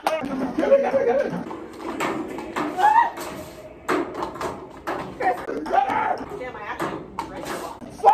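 Several women's voices talking over one another, with short sharp clacks of plastic party cups being flipped and tapped down on a table.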